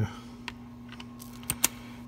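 Sharp metal clicks from a socket being handled and fitted onto a ratchet wrench: one light click about half a second in, then two sharp clicks close together about a second and a half in, over a low steady hum.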